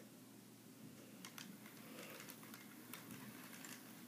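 Faint, scattered clicking from a Bachmann HO-scale Gordon model locomotive creeping backward along its track toward its coach, with a few clicks about a second in and a handful more near the end.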